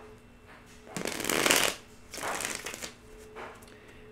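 A deck of tarot cards being shuffled by hand: two short shuffling bursts, the louder about a second in and a second, shorter one just after.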